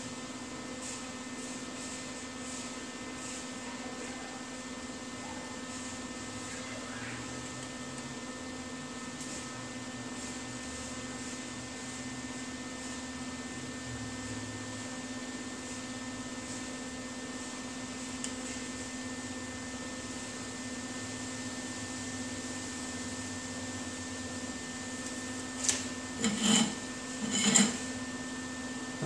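Steady electric machine hum with a low pitched drone. A couple of seconds before the end come a few sharp clicks and knocks as a tape measure and a steel pulley are handled on a steel bench.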